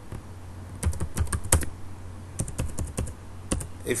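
Computer keyboard keys being typed in short runs of clicks, two or three bursts a second or so apart, as a word is entered.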